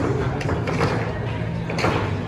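Bar room ambience: background music with a steady low hum and general room noise, with a few short sharp knocks.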